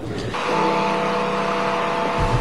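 A vehicle engine running steadily: an even hum holding one pitch over a hiss, starting a moment in.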